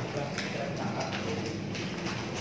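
Footsteps on a bare concrete floor as people walk, irregular steps with faint voices behind them.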